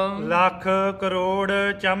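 A man chanting a line of Punjabi devotional verse in a melodic, sung recitation, holding long notes close to one pitch with short breaks between phrases.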